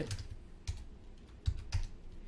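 Computer keyboard typing: a few separate keystrokes, two of them close together near the end.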